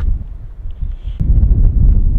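Wind buffeting the microphone: a low rumble that grows stronger about a second in.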